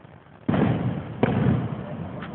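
Fireworks exploding: two loud bangs about three-quarters of a second apart, each trailing off in a rumbling echo.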